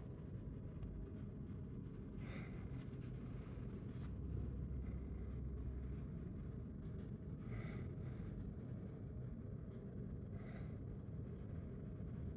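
Quiet room tone with a steady low hum, broken by a few faint soft rubbing or tapping sounds from gloved fingers handling a smartphone.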